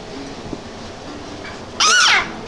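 Collie mix dog giving a brief high-pitched whine near the end, after a quiet stretch of faint handling noise.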